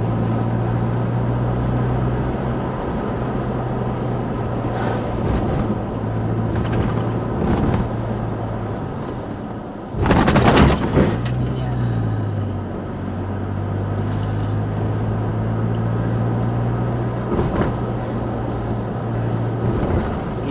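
Car engine and road noise inside the moving car's cabin: a steady low drone. About halfway through, a loud rush of noise lasts about a second, after which the engine note drops and settles again.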